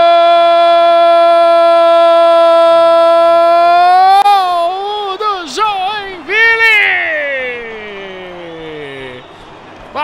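A Portuguese-speaking sports commentator's drawn-out goal cry: one long "Gol!" held on a steady pitch for about six seconds. It then breaks into excited shouted syllables and ends on a long call that falls in pitch and fades.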